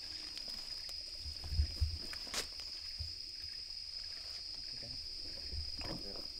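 A steady high-pitched insect drone, with a few dull low thuds and a sharp click around two seconds in as a hand peat auger is worked down into wet peat soil.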